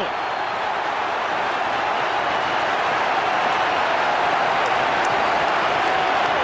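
Large football crowd cheering a goal just scored, a steady, loud roar that swells slightly.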